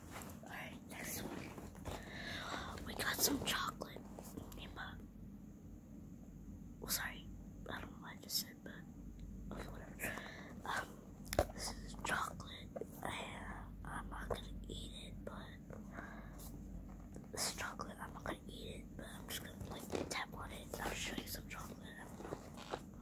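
Close-up ASMR whispering, broken by scattered short clicks and taps as a cardboard chocolate box is handled.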